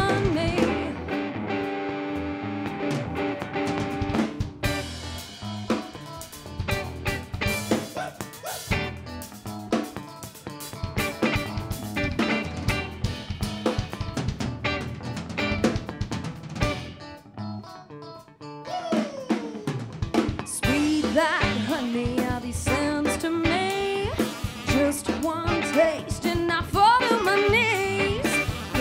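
Live rock band playing an instrumental stretch of a song: a drum kit with snare and rimshot hits drives it under electric guitar. The music thins out briefly about two-thirds of the way through, then comes back fuller.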